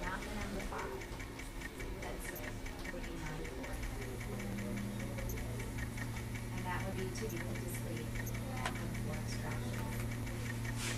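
Fast, even ticking over room noise, with a steady low hum that comes on about four seconds in.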